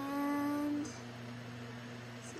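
A single held vocal note from a person, on one steady, slightly falling pitch, lasting about a second. A faint steady low hum runs underneath throughout.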